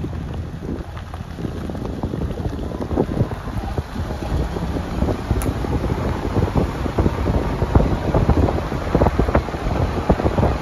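Wind buffeting the microphone from a moving vehicle, a dense irregular low rumble with gusts, growing gradually louder.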